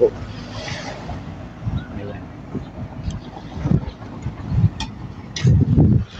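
Wind buffeting a phone microphone outdoors, coming in irregular low rumbling gusts that are strongest near the end.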